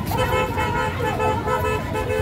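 Street sound around a walking procession: voices over running road traffic, with short high pitched calls or horn-like tones.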